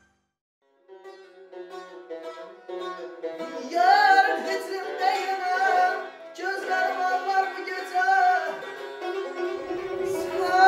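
An Azerbaijani tar, a long-necked plucked lute, playing a slow melody after about a second of silence, joined about three and a half seconds in by a voice singing long, ornamented lines.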